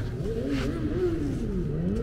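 A motor vehicle engine running over a low rumble, its pitch wavering, dipping near the end and then rising again as the revs change.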